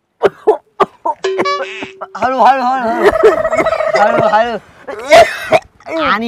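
A boy coughing on cigarette smoke: a few short coughs, then long wavering vocal sounds mixed with laughter, and one loud cough near the end.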